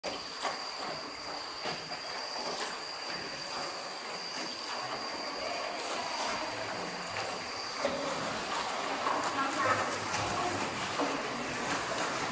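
Ambience inside a limestone cave during a boat ride: indistinct voices of people in boats and the occasional knock and splash of oars in the water. A thin, steady high tone runs through the first seven or eight seconds.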